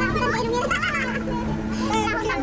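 Several people's voices chattering, some high-pitched, over a steady low hum.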